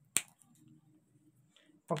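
A single sharp click shortly after the start.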